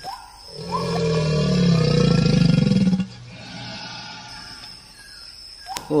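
A deep, rough animal roar lasting about two seconds, starting about half a second in, followed by a quieter stretch.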